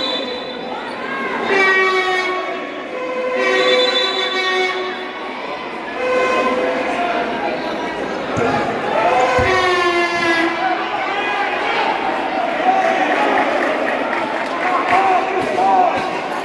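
Indoor futsal game: a spectator's air horn is blown in several blasts of about a second each, over crowd shouting. Ball kicks and bounces on the court thud now and then, and the whole sound echoes in the large hall.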